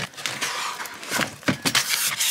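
Clear plastic wrapping crinkling and rustling as it is handled against a cardboard box: a run of quick crackles, louder in the second half.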